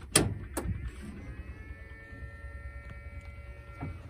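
Circuit breaker switches clicked on twice, then an electric motor starts and runs with a steady whine over a low hum.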